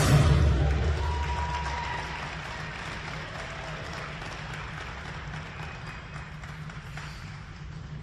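Audience applauding at the end of a figure skating program, the applause fading gradually, with the last of the program music dying away in the first couple of seconds.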